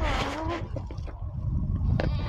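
Low rumbling handling noise on a phone's microphone while a finger covers it, with a short pitched call in the first half-second.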